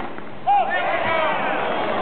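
A loud call rings out about half a second in, and overlapping spectators' voices follow in a brief collective reaction at the end of a tennis point.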